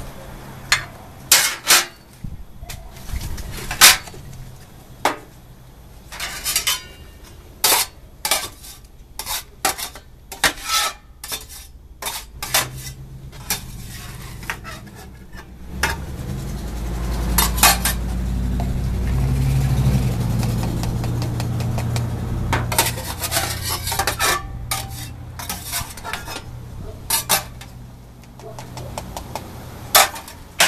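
A chef's knife knocking and scraping on a stainless steel pan as kernels are shaved off a roasted ear of corn, a run of sharp metallic clicks. In the second half a low rumble swells underneath, and near the end a metal scoop scrapes the kernels in the pan.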